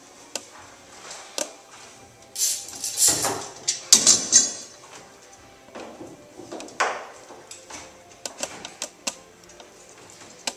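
Metal bar clamps being handled and tightened against wood: scattered clicks and knocks, with a longer rasping, scraping stretch about two and a half seconds in and a short one near seven seconds.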